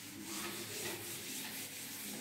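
Chalkboard duster rubbing chalk off a blackboard in repeated back-and-forth wiping strokes, a steady dry scrubbing.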